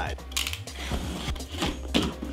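Utility knife slicing the packing tape on a cardboard box, with small clicks and knocks of the box being handled; two short rasping cuts, the first just under half a second in and the second near the end.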